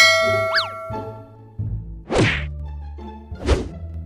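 Comedy fight sound effects: a bright metallic ding that rings on with a quick pitch slide at the start, then two sharp whack hits about two seconds in and near three and a half seconds, over a low steady hum.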